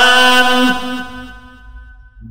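A man's voice in a chanted sermon, holding one long sung note at the end of a phrase. The note fades away over the second half.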